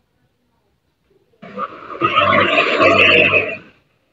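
A loud burst of rough, noisy sound coming over a video-call microphone, with a low buzz underneath. It starts about a second and a half in and stops after about two and a half seconds.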